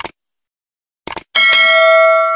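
Sound effects for an animated subscribe button: a short click, two quick clicks about a second in, then a struck notification-bell ding that rings on, fading slowly.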